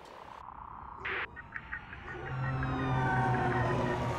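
Soundtrack sound effects: a short rush of noise about a second in, then a low steady hum with several whistling tones that slowly fall in pitch, swelling louder toward the end.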